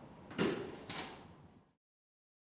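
A door shutting: two thuds about half a second apart, the first louder, each with a short ringing tail. The sound then cuts off suddenly.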